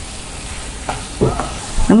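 Wooden spatula stirring grated cauliflower masala in a nonstick frying pan, over a steady sizzle of the mixture frying, with a few light knocks of the spatula against the pan about a second in.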